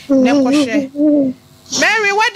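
A person's voice in two long, wavering moans, each held at one pitch, then speech starting again near the end.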